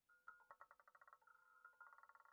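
Faint sound effect of an online roulette game as the ball circles the wheel: rapid ringing ticks that thin out about a second in, over steady chiming tones.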